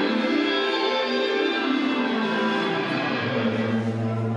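Live band music: sustained, ringing guitar and keyboard chords with no drums. A low bass note comes in about three seconds in.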